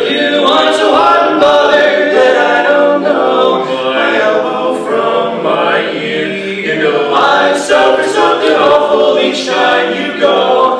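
Male barbershop quartet singing a cappella in four-part close harmony, holding sustained chords that shift from one to the next.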